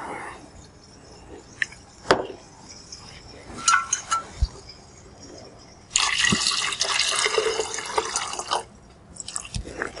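Extraction solvent poured from a glass jar into a plastic measuring jug, a steady splashing pour of about two and a half seconds starting about six seconds in. It is preceded by a few light clinks of glass being handled.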